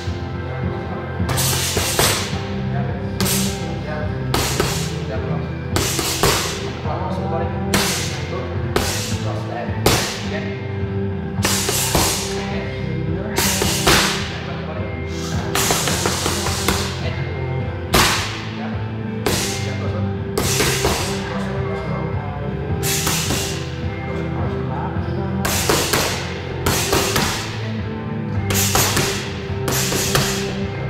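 Sharp smacks of boxing gloves landing on focus mitts, coming at an uneven pace of about one or two a second in short combinations, over background music.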